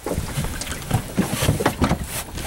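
Wind buffeting the microphone on an open boat, with irregular knocks and handling noise as the angler works a hooked fish.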